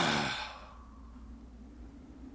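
A man's voice in a long sighing exhale that fades out within the first half second, followed by faint hiss.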